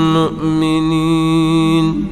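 A man's voice reciting the Quran in a melodic chant, holding one long steady note with a short break about a quarter of a second in.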